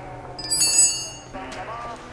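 A short, high metallic ring, then a tinny radio broadcast of a race commentary with a voice.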